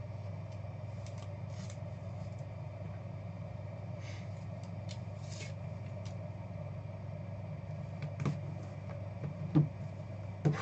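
A steady low room hum, with faint scattered rustles and clicks of a trading card being slid into a rigid plastic top loader. Two sharper soft taps come near the end as a cardboard box is handled on the table.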